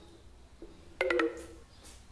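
Dry-erase marker squeaking on a whiteboard as a line is drawn under the writing: a few faint short squeaks, then a sharper squeak about a second in that fades within half a second.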